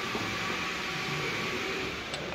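Steady, continuous mechanical background noise, an even hiss with a faint hum under it, like a running fan or machinery in a workshop.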